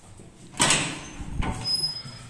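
The metal swing landing door of an old ZREMB passenger lift is pulled open by its knob: a sudden loud clack about half a second in, then rattling and a second knock as the door swings, with a thin high squeal near the end.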